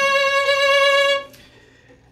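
A violin playing one sustained bowed note with a tense, uncontrolled vibrato, the kind that comes from a tensed-up arm rather than controlled finger rolling. The note stops a little over a second in.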